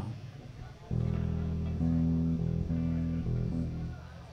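Amplified guitar playing a few slow, sustained low notes, starting about a second in, changing pitch several times and stopping near the end.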